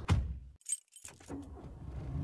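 Car keys jangling briefly after a moment of silence, followed by a few light clicks, as a sound effect in a radio ad.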